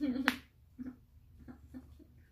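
A short spoken word with a single sharp click about a quarter second in, then a few faint soft sounds.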